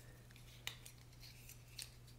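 Near silence: room tone with a faint low hum and two faint short clicks, one a little over half a second in and a smaller one near the end.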